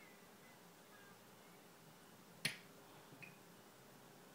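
Near silence, broken once, about two and a half seconds in, by a single sharp click: the small glass liqueur bottle's neck tapping the metal bar spoon.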